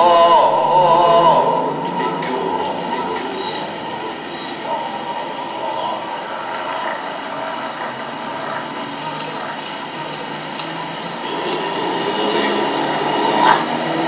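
Loud, steady roar of city street noise, heavy traffic with the dense rumble and hiss of passing vehicles. A man's voice trails off in the first second or two.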